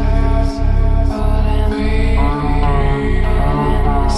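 Slowed electronic music track: a heavy, sustained bass that dips in a steady pulse about every 0.6 s, under a drawn-out melodic line that glides in pitch.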